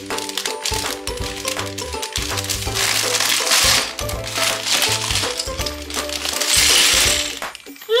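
Background music over a plastic LEGO parts bag being torn open and crinkled. Near the end, loose plastic LEGO pieces spill out of it and clatter onto a tabletop.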